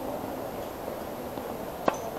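Tennis ball struck once by a racket, a single sharp hit near the end, over a faint steady outdoor background.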